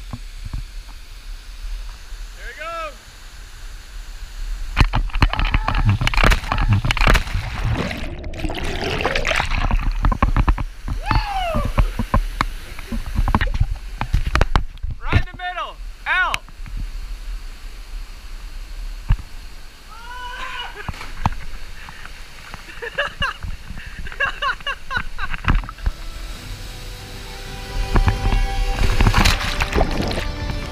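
Several short whoops and yells, with rough wind-like buffeting on the camera microphone. Near the end comes a loud rush of water and splashing, as the camera goes into the waterfall's pool.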